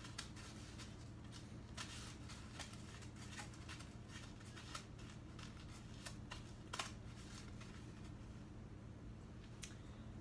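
Faint, irregular crackles and light clicks of hands rolling coated banana pieces in panko breadcrumbs in a plastic container, over a steady low hum.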